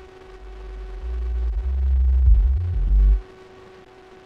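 A deep electronic bass tone played back from the session swells in over the first second, moves through a few low notes, then cuts off suddenly a little after three seconds. A faint steady hum runs underneath.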